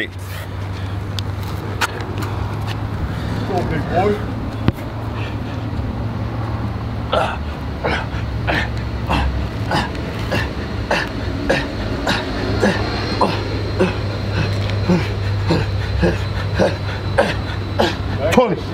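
A man breathing hard in short, sharp exhales or grunts through a set of push-ups, over a steady low hum. The breaths fall into a quick rhythm of about two a second after several seconds.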